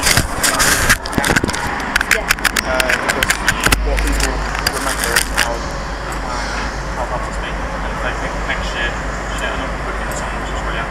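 Handling noise on a camera microphone: a rapid run of clicks, knocks and rustles for the first few seconds, then a steady low rumble with faint voices in the background.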